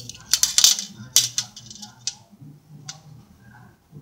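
Metal handling noise from a brass strainer and a steel tape measure: short bursts of rattling and scraping in the first two seconds, then a single sharp click near three seconds.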